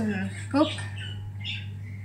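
Convection microwave oven running while it bakes, giving a steady low hum, with a few spoken words over it near the start.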